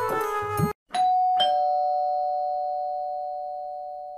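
Two-tone ding-dong doorbell chime: a higher note, then a lower one about half a second later, both ringing on and fading slowly.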